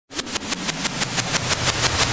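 Logo-intro sound effect: a rapid, even train of sharp clicks, about six a second, over a low tone that slides down in pitch.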